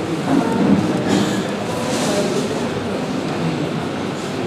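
Steady hall noise of a gathering: a low murmur of indistinct voices and movement, with no clear speech standing out.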